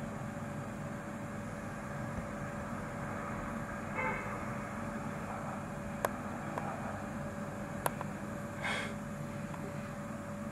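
Steady outdoor background rumble of distant traffic with a constant faint hum. Two sharp clicks come about six and eight seconds in, and short faint sounds about four and nine seconds in.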